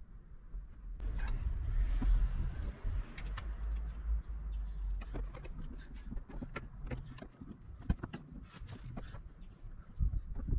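Scattered clicks and knocks of hands working at water-pipe fittings in a van's side hatch and at a plastic shower point cover, over a low rumble that is loudest in the first half.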